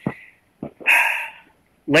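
A dog barks once, a single short bark about a second in.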